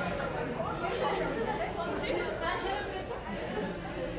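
Several people talking at once in a room, indistinct chatter with no music.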